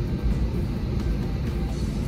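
Steady low rumble of an Airbus A321's cabin air and ventilation, heard from the galley.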